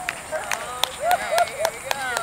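Onlookers' voices: several short wordless calls, each rising and falling, bunched together in the middle, among a few scattered sharp claps or clicks. A steady high-pitched hiss runs underneath.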